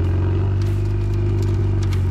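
Ferrari 488 Pista's twin-turbo V8 running at steady low revs while the car cruises, heard from outside the body near the wheel, with tyre and road noise.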